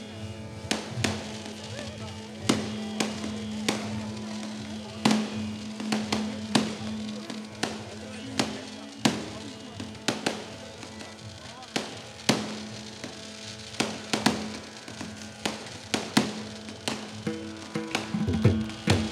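Aerial fireworks going off in a long, irregular series of sharp bangs, roughly one to two a second, over a steady low hum and background music.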